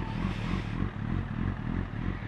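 Honda CBR sport bike's inline-four engine running with a steady low note at slow speed, picked up by a helmet microphone, with a haze of wind and road hiss over it.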